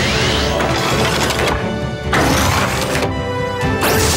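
Cartoon background music under sound effects of a toy-like car transforming into a monster truck, with whooshing sweeps and a few crashing clanks as the big tires extend.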